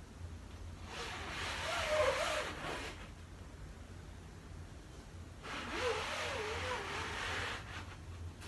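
Squeegee dragged across a silkscreen mesh in two strokes, each a scrape of about two seconds with a wavering squeak, the first about a second in and the second past the middle.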